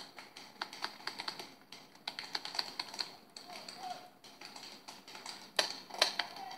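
Paintball markers firing in irregular runs of sharp pops, several a second at times, with the loudest pop about five and a half seconds in.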